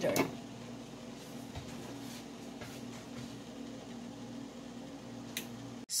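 Steady low hum with a faint hiss from the stovetop, where a lidded pot of potatoes is at the boil.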